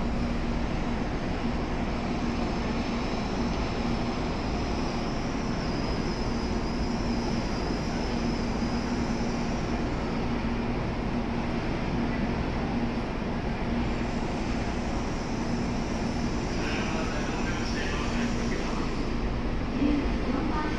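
Steady hum of Tokaido Shinkansen N700-series trains standing at the platform, with one low drone held throughout. A faint high whine joins for a few seconds in the middle.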